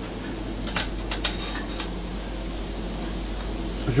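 Small pieces of raw spiced sucuk mix frying on a flat-top steel griddle, a test-fry to check the seasoning, with faint sizzling over the steady hum of a kitchen extractor fan. A few quick light clicks come about a second in.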